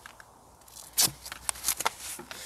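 Straps of a Leatt C-Frame Pro Carbon knee brace being undone as it is taken off: after a quiet first second, a handful of short, sharp rips and clicks.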